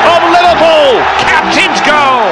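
Football commentator's excited male voice, with long falling shouts over crowd noise.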